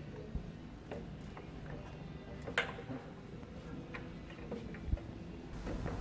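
A few faint, sparse metallic clicks and taps as a track bar's heim-joint rod end is handled and fitted into its bracket, the sharpest about two and a half seconds in.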